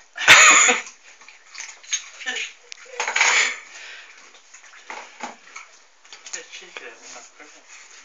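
Crackling and small clicks of a snack packet being handled while food is shared out, with a loud burst just after the start and another about three seconds in.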